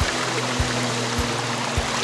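A shallow, rocky mountain stream rushing steadily, with background music laid over it: held notes and a soft low beat a little under twice a second.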